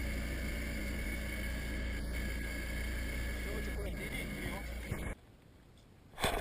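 A boat's motor running with a steady low drone, which cuts off suddenly about five seconds in, leaving near silence.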